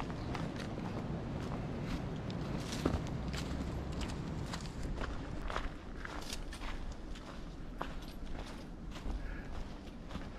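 Hikers' footsteps on a woodland trail strewn with dry leaves, irregular steps about one or two a second over a low steady background noise.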